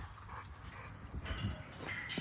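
XL American Bully dogs wrestling in play, with faint dog vocal sounds and a brief faint high-pitched sound about one and a half seconds in.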